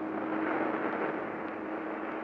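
Ocean surf: a wave breaking in a swell of rushing noise that peaks about half a second in, then eases to a steady wash.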